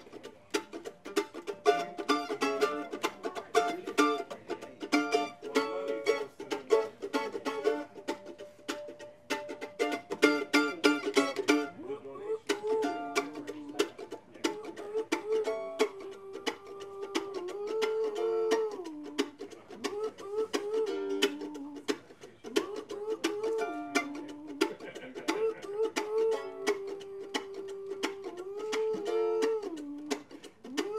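Acoustic string band with mandolin, acoustic guitar and upright double bass playing an upbeat tune with quick picked notes. About twelve seconds in, a long-held melody line with sliding notes comes in over the picking.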